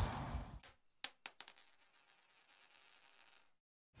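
Short high-pitched metallic jingle with several sharp clicks, starting about half a second in and lasting about a second. After a brief silence, a fainter stretch of the same high ringing follows.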